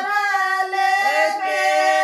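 A group of women singing a traditional Indian wedding folk song (geet) without instruments, in long, held, gliding notes.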